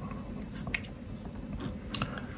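Pen writing and scratching faintly on paper, with a single sharp click near the end.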